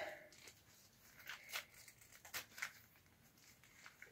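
Faint rustling and short scrapes of a fabric stoma protector and a plastic ostomy pouch being handled as the protector is wrapped around the pouch.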